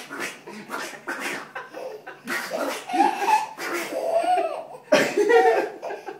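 A baby giggling in quick breathy bursts, breaking into louder, high-pitched laughs about three seconds in and again near the end.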